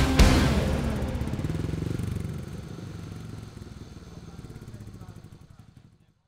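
The last chord of a rock band's song, struck just after the start, rings out with a low, fast-pulsing rumble and fades steadily away, dying out at the very end.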